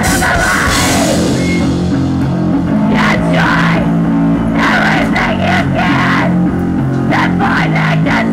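A loud rock band playing live: distorted electric guitar and bass over a drum kit, with repeated drum and cymbal hits.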